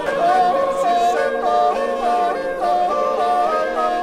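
Gurian folk polyphony sung by a male ensemble, with a high yodelling krimanchuli top voice leaping up and down in a short figure that repeats about twice a second over the held lower voices.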